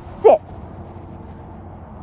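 A woman gives a dog the one-word command "sit" early on. After that there is only steady, low outdoor background noise.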